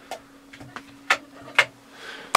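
Light switches clicking: a few sharp clicks, the loudest two about half a second apart in the second half, over a steady low hum.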